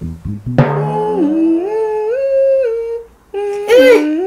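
A person humming a short song melody note by note as a name-that-tune quiz question, pausing briefly about three seconds in before humming on.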